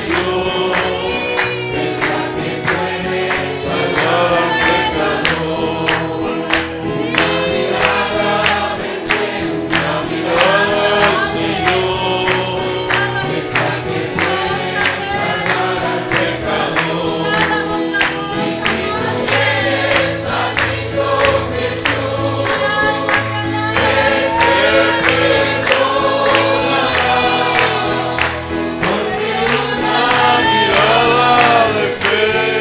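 A congregation singing together, with steady rhythmic hand-clapping in time with the song.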